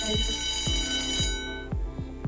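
Alarm-clock ringing sound effect marking a countdown timer running out, lasting about a second and a half and then cutting off, over background music with a steady beat about twice a second.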